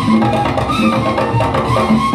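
Live band playing upbeat Latin-style worship music: a steady, even percussion beat under a short-note melody line.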